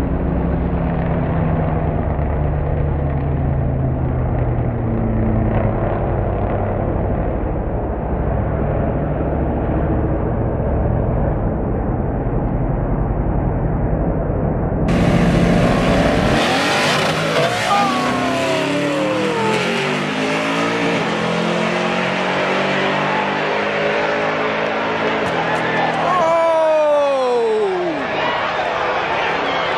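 Car engines revving hard and dropping back, the pitch sweeping down each time the throttle is let off, several times. About halfway through the sound turns brighter and clearer.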